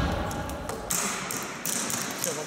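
The tail of background music dies away in the first half second, followed by a few light taps and knocks.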